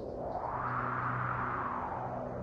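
Ambient music fading in: low sustained drone tones under a swell of noise that rises and falls over about two seconds.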